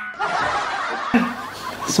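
A person laughing, loudest in the first second and quieter after.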